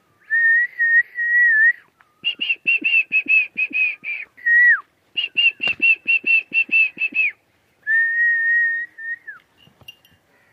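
A person whistling: a long held note, then two quick runs of repeated short notes that each end in a downward slide, then another held note that slides down at its end.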